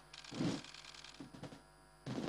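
Faint camera shutters clicking irregularly during a press photo call.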